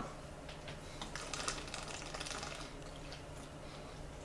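Faint, irregular clicks and taps, most of them in the first half, over a low steady hum.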